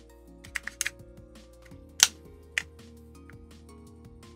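Sharp small plastic clicks and taps from handling a slot car's plastic body and chassis, a quick cluster near the start and the loudest single click about two seconds in, over soft background music.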